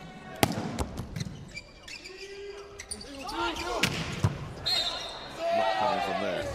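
Volleyball rally in an arena. A sharp hit of the ball about half a second in, from the jump serve, is the loudest sound. Further ball hits follow, and sneakers squeak on the court floor, over crowd noise.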